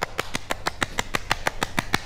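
One person clapping hands in a quick, even run of about seven claps a second.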